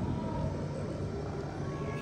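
Steady low rumble of indoor background noise with a faint, thin, steady tone above it; no distinct event stands out.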